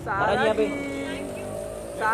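A voice shouting one long, drawn-out call, a photographer calling out to the actress, over the low steady hum of a car engine.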